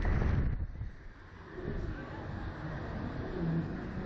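Wind rushing over the microphone of a camera mounted in a swinging Slingshot ride capsule, with a loud low buffeting gust at the start that settles to a steadier rush.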